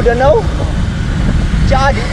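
Loud, steady low rumble of wind buffeting the microphone of a camera on a moving road bike, with short bits of a man's voice at the start and near the end.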